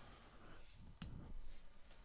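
A single sharp click about a second in, made while switching from the eraser to the pen tool in the drawing software, with a few faint soft knocks after it over quiet room tone.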